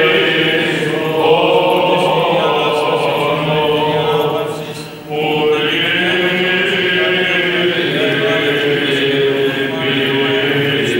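Male voices chanting a Greek Orthodox funeral hymn together in Byzantine chant, long held notes in a reverberant church. The singing thins out briefly about five seconds in, then picks up again.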